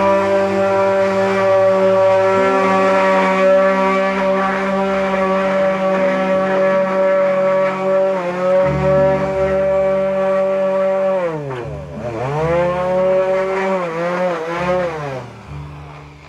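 Electric orbital sander running against the wooden body of a çifteli, its motor whining steadily. About 11 seconds in the pitch drops and climbs back, then wavers under changing pressure before dying away at the end.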